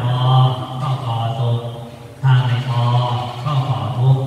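A Buddhist monk's voice reciting in a steady, near-monotone chant, in long phrases with one short breath pause a little past halfway.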